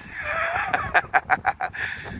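A man laughing: a rising voiced sound, then a quick run of short, evenly spaced pulses, about six a second.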